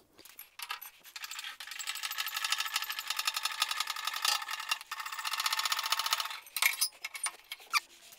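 A small steel scissor-jack center lift being handled: a fast, even metallic rattle lasting about five seconds, then a few separate clicks near the end.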